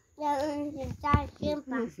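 A small child's voice making drawn-out sing-song sounds, with one sharp knock about a second in.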